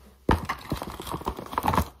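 Irregular knocks, clicks and rustling of things being picked up and moved right beside the microphone. The noise starts about a third of a second in and runs in quick, uneven taps.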